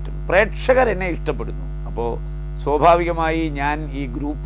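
A man speaking Malayalam in short phrases with brief pauses, over a steady low electrical mains hum in the recording.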